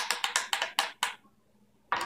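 A spoon clinking against the inside of a glass jar while stirring: a quick run of about six clinks in the first second, then it stops.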